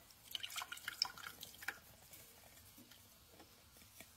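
Warm infused coconut oil being poured from a glass bowl through a fine-mesh metal strainer, with faint dripping and patter, mostly in the first two seconds.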